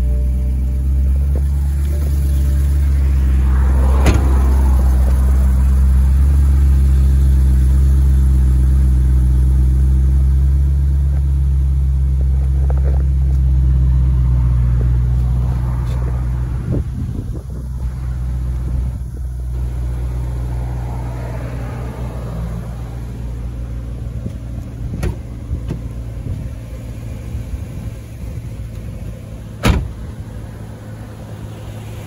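BMW M3's 4.0-litre V8 idling steadily in park, a low, even exhaust note that is loudest in the first half and eases off gradually after the middle. A sharp knock sounds near the end.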